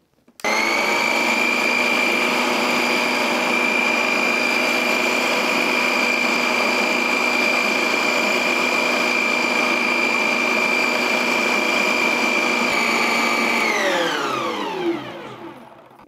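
Electric mixer grinder motor running at a steady high whine as it beats cake batter in its jar. It starts about half a second in, and near the end it is switched off and winds down with a falling pitch.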